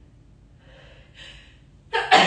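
A woman sniffling through a stuffy nose, two short faint sniffs, then a loud cough bursting out right at the end. It is an allergic snuffle and cough.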